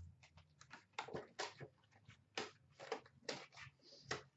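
Faint, irregular rustling and crinkling of foil trading-card pack wrappers and cards being handled, in short scattered bursts.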